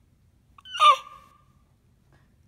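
Eight-month-old baby giving one short, high-pitched squeal about a second in.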